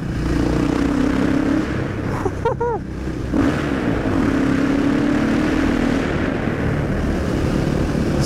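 Single-cylinder four-stroke engine of a KTM 500 EXC with an FMF exhaust, dB killer removed, running hard in sixth gear at road speed as the bike rides into a road tunnel. The exhaust note holds a steady pitch, with a brief dip about three seconds in.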